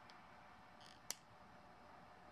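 Near silence with a single short, sharp metallic click about a second in: chain nose pliers working a small 18-gauge jump ring closed.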